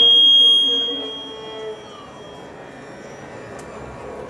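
A loud, steady, high-pitched whistle of PA feedback for about a second, fading out. Under it, a soft violin note trails off; after that only low hall noise remains.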